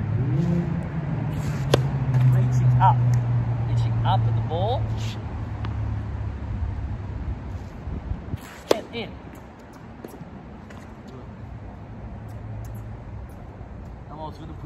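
Two hard serves: a tennis ball struck sharply about two seconds in and again near nine seconds, the second hit the louder. Beneath the first half runs a steady low engine drone, like a vehicle, that fades out around eight seconds.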